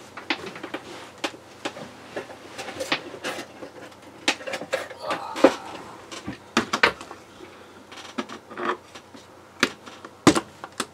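Irregular clicks, knocks and clatter of objects being handled and moved in a small room, thickest in the middle with a few sharper knocks, as someone rummages for a tape measure.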